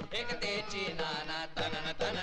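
Voices singing a chant-like Marathi folk-theatre song over rhythmic drum beats.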